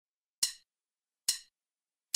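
Two sharp count-in clicks, about a second apart, from the song's backing track, marking time before the music starts.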